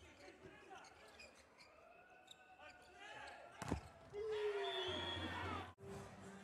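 Volleyball rally on an indoor court in a large hall: faint sneaker squeaks, then one sharp smack of the ball a little past halfway. A louder stretch with a held tone follows and cuts off suddenly just before the end.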